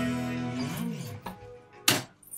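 Electric guitar's final E major chord ringing out and fading away over about a second, with a brief wobble in pitch as it dies. A sharp click near the end is the loudest sound.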